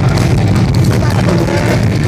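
Live psychobilly band playing loudly, with the upright coffin bass heavy in the low end and a voice heard about a second in, distorted on a phone microphone.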